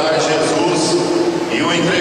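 A man's voice reading aloud in Portuguese, steady narration with no other sound standing out.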